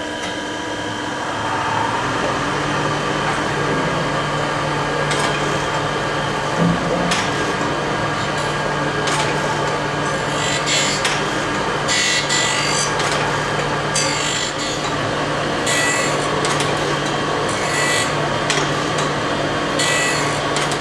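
Surface grinder running with a steady motor and wheel hum. Its abrasive wheel grinds a steel and cast-iron bed plate in repeated hissing passes every second or two as the table traverses. The grinder has a damaged arbor bearing, which leaves a scalloped finish.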